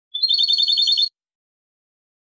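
European goldfinch (jilguero) singing one rapid trill of about ten evenly repeated high notes that lasts about a second. The phrase is from the Málaga song style used to tutor young goldfinches.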